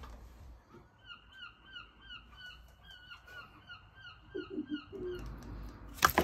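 A gull calling: a faint series of short, hooked calls repeated about three times a second. A few soft low sounds come near the end.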